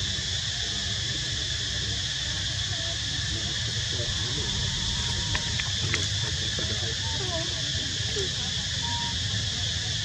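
Insects droning steadily at a high pitch over a low outdoor hum, with faint distant voices and a few small clicks about five to six seconds in.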